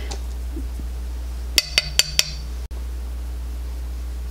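Four quick, light clinks about a second and a half in, from a makeup brush knocking against a hard eyeshadow palette as shadow is picked up. A steady low hum sits underneath.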